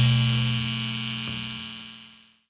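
The final chord of a punk rock song left ringing: one steady low note with many overtones, fading evenly away until it is almost gone at the end.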